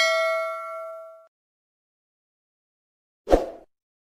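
Bell-like notification ding from a subscribe-button animation, several pure tones ringing and fading away over about a second. Near the end comes a short pop.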